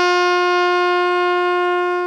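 Alto saxophone holding one steady note: the upper-octave D of the A blues scale, fingered with three fingers in each hand and the octave key.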